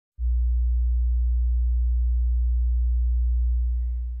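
A loud, deep, steady electronic hum, a single low pure tone. It starts abruptly right at the start and fades away near the end.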